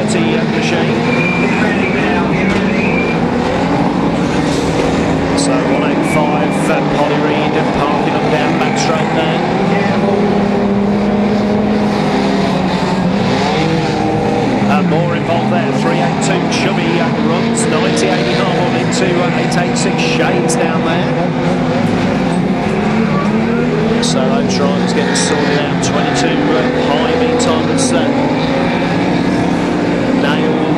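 Several banger racing cars' engines running and revving as they lap the oval, many engine notes overlapping and rising and falling with the throttle. Short sharp clacks cut in now and then, clustered a few seconds in and again near the end.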